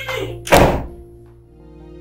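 A door is pushed shut and closes with one heavy thud about half a second in, over steady background music.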